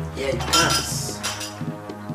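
Drinking glasses clinking against each other and a serving tray as the tray is set down on a table, a bright clatter about half a second in, over background music.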